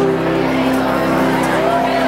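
The final chord of a country song's backing track held out through a PA speaker, several steady notes together, as the singing has ended. Near the end a single whooping call from the audience rises over it.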